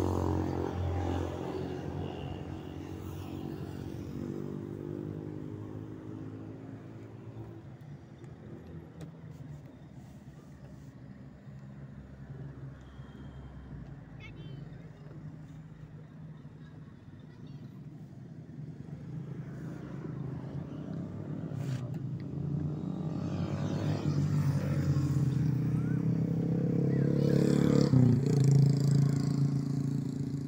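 Motor vehicles passing by: one engine fades away over the first few seconds, and another grows louder from about two-thirds of the way through and goes past near the end, its pitch dropping as it passes.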